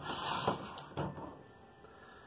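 Lee Load-All shotshell press being worked by hand to punch the spent primer out of a 12-gauge shell: a short run of mechanical clunks and rattles over the first second, then quieter.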